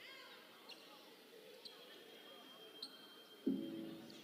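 Faint basketball arena ambience: indistinct crowd and court voices, with a few short high squeaks and a thin steady high tone held for more than a second in the middle. A louder voice comes in near the end.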